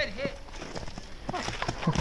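Men laughing: a short vocal sound at the start, then a run of quick, repeated laughing bursts beginning about a second and a half in.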